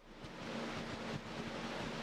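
Steady hiss of room and microphone background noise during a pause in speech, with a faint steady hum underneath.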